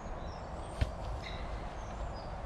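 A football kicked once a little under a second in, a short soft thud, over low outdoor ambience with a few faint bird chirps.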